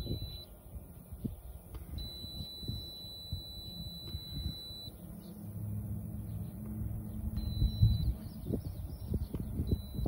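Digital insulation resistance tester (megohmmeter) sounding a steady high beep while its test button is held on a pump motor's windings: a short beep at the start, one lasting about three seconds, then two shorter ones near the end.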